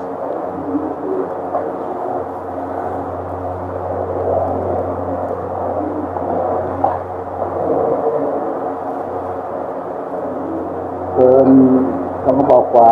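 A steady, low droning murmur of voices in held tones, like monotone group chanting, over a constant low hum. A voice speaks louder about eleven seconds in.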